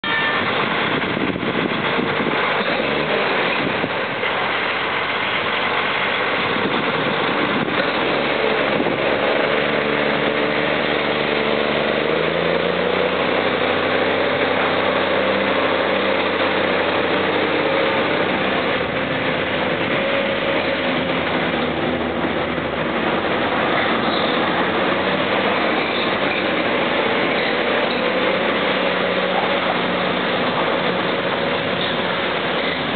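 M35A2 deuce-and-a-half army truck's multifuel diesel engine running hard under heavy load while the truck drags a 45-foot shipping container. The engine note climbs about a third of the way in and then holds steady.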